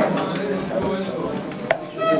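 Several voices murmuring prayers in low tones, with one sharp knock near the end.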